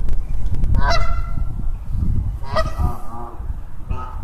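Canada goose honking: a short honk about a second in, then a longer run of broken honks about two and a half seconds in.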